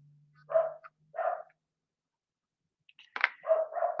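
A dog barking: two short barks in the first second and a half, then a few more near the end.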